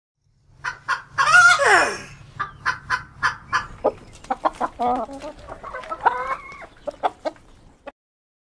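Chickens clucking in short, quick repeated calls, with a louder drawn-out call about a second in that falls steeply in pitch, and another longer call a little after the middle.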